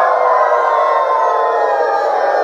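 A man's voice imitating a wolf's howl: one long, loud howl held at a steady pitch.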